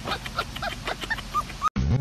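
A dog whining in a quick series of short, high yips. Near the end the sound cuts off and background music starts.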